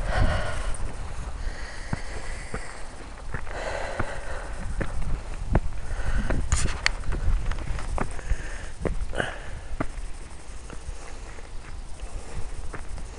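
A person breathing hard while walking uphill, with breaths about every two seconds, over footsteps in grass. There is a steady wind rumble on the microphone and scattered sharp clicks from handling the camera.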